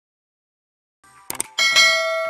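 Silence for about a second, then two quick mouse-click sound effects and a bright notification-bell ding that rings on past the end: the sound effects of a subscribe-button animation.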